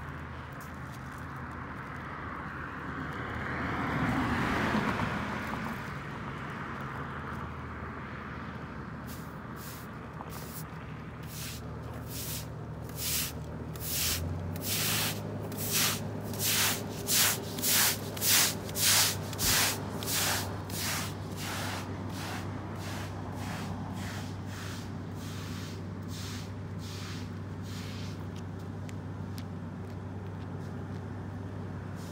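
Push broom sweeping pavement in a long run of quick, scratchy strokes, about one and a half a second, building to loudest in the middle and then tapering off. Under it is the steady hum of road traffic, and a vehicle passes a few seconds in.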